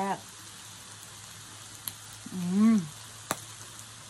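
Pork belly sizzling on an electric moo kratha grill pan: a steady fizzing hiss with a low hum underneath. A hummed "mm" of relish about two and a half seconds in is the loudest sound, and two sharp clicks come before and after it.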